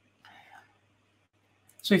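A pause in a man's webcam talk: a faint, short breathy sound about a quarter second in over a faint low hum, then he starts speaking again near the end.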